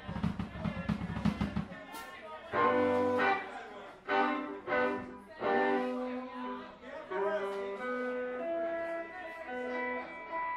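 Live rock band: a drum and bass groove that cuts off about two seconds in, leaving an electric guitar playing chords on its own, each chord ringing out before the next.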